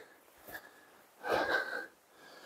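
A man's single heavy breath, puffed out over about half a second a little past the middle, from someone tired from climbing a steep slope; a faint tap comes just before it.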